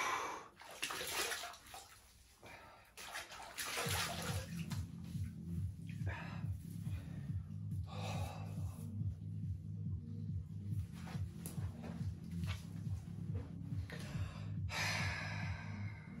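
Bath water sloshing and splashing as hands move through a foamy, ice-cooled bath and scoop water onto the face, in a few separate splashes. Background music with a steady low beat comes in about four seconds in.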